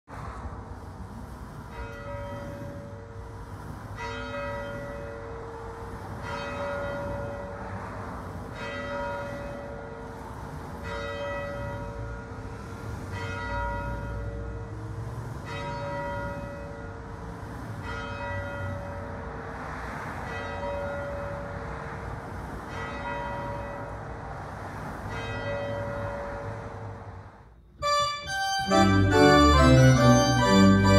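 A church bell tolled by hand from its bell rope, slow single strokes a little over two seconds apart, each ringing on into the next. Near the end the bell cuts off and an organ starts playing chords.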